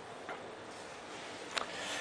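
Faint chalkboard work: a felt eraser wiping and chalk writing on the board. A light tap comes about a quarter second in, then a sharper tap of chalk on the board near the end, over a soft scraping.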